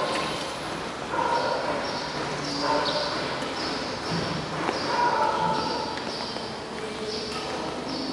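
A small bird chirping over and over, short high notes about two a second, with faint voices in between.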